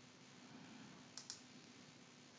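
Near silence with two faint computer mouse clicks in quick succession a little past a second in.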